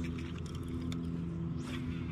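Steady low hum of a bass boat's electric trolling motor, with a short hiss near the end.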